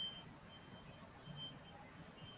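Faint room tone: a low hiss with a faint, high-pitched whine that comes and goes in short dashes.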